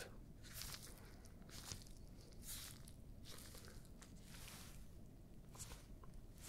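Gloved fingertips gently brushing and pressing against the microphone, making a series of faint, soft rustles at uneven intervals.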